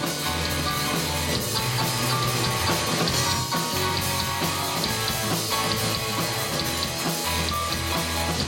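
A rock band playing live: electric guitars, drum kit and a digital piano keyboard together in a steady, full-band passage.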